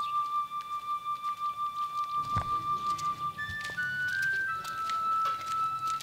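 Background film music: long held notes, one after another at different pitches, with a few scattered clicks.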